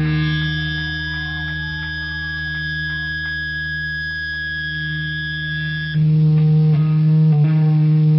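Electric guitars through amplifiers in a small room: a steady held ringing tone over amp hum, with a few faint notes played over it. About six seconds in, the high ringing cuts off and the sound gets suddenly louder, while the hum goes on.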